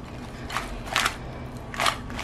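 Glass bowl of sticky glazed chicken wings being tilted and shaken on a wooden cutting board, giving three short wet rustles about half a second apart.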